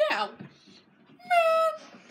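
A man's high, squeaky falsetto voice: a quick 'Now!' at the start, then about a second later a single held squeal of about half a second, steady and dropping slightly at the end.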